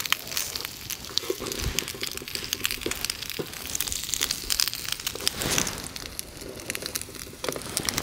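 Bacon, a hash brown and bagel halves sizzling in butter and bacon fat in a pan over a wood fire, a steady hiss full of small crackles and pops. A few soft knocks as a wooden spatula presses the bagel into the pan.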